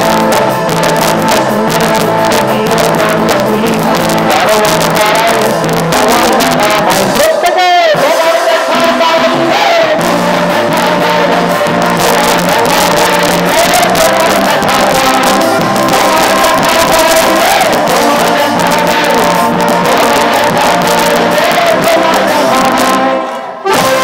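Loud live music with singing, running steadily, with a short break and a sliding pitch about eight seconds in and a brief dip just before the end.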